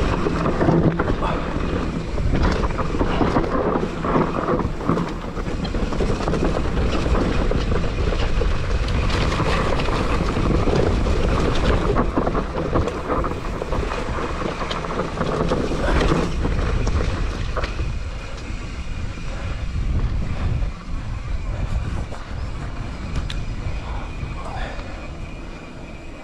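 Nukeproof Mega enduro mountain bike descending a rough dirt trail: tyre roar and the clatter of the bike over the ground, with wind buffeting the microphone. The noise eases in the last few seconds as the bike rolls onto smooth tarmac.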